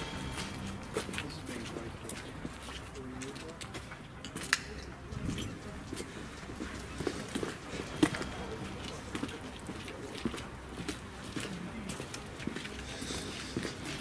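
Footsteps of a few people walking over rough ground, with quiet murmured talk and two sharp knocks, about four and a half and eight seconds in.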